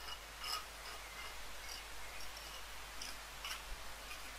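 Small pointing trowel scraping set mortar out of the joints of a solid-brick wall: a series of faint, short, irregular scrapes.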